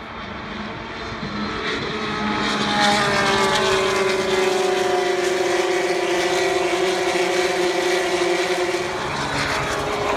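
GP3 race cars' naturally aspirated 3.4-litre V6 engines at high revs on a straight, growing louder over the first three seconds, then holding with the engine note sliding slowly down as they pass.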